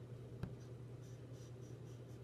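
Faint room tone with a steady low hum and one small click about half a second in.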